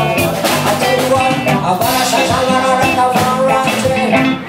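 A reggae band playing live: electric guitars and a drum kit in a steady, loud rhythm.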